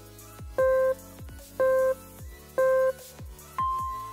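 Workout countdown timer beeping over background electronic music with a steady beat. Three short beeps come a second apart, then a higher, longer final beep: the signal that the rest is over and the next exercise begins.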